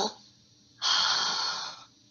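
A woman's single audible breath while holding a strenuous side plank, about a second long, starting sharply about a second in and fading away; the rest is near silence.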